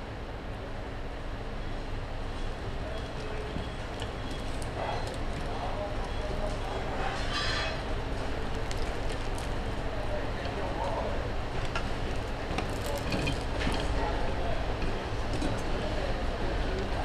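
Steady low background rumble with faint voices in it, a brief hiss about seven seconds in, and a few light clicks near the end.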